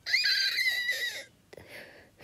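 A person with a cold making a high-pitched, squeaky, wheezing breath about a second long, followed by a fainter breath.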